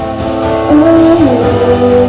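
A live band plays a song: a woman's lead vocal over keyboard and drum kit. About two-thirds of a second in she sings louder, holding a note that steps up and then slides down.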